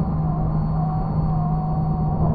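Fliteboard electric hydrofoil's motor and propeller running at steady speed: a steady low hum with a fainter higher whine, over wind rush on the microphone.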